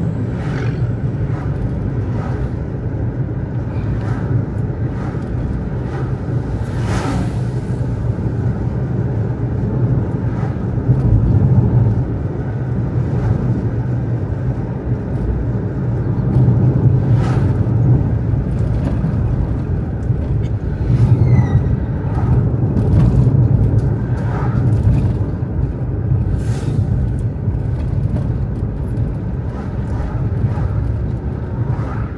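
Steady low rumble of road and engine noise heard inside a moving car's cabin, swelling slightly a few times, with a few faint clicks.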